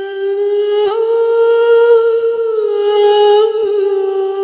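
A single long held vocal note at one steady pitch, opening the trailer's music. Its pitch rises slightly about a second in and settles back near the end.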